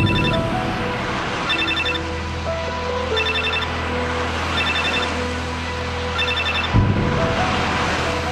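Soft background music over a steady low car-cabin rumble, while an electronic phone ringtone trills in short bursts of rapid beeps about every second and a half, five times. A sudden louder rush of noise comes in about a second before the end.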